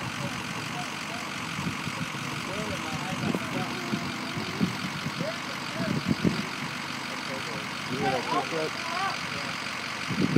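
Ford F-250's diesel engine idling steadily.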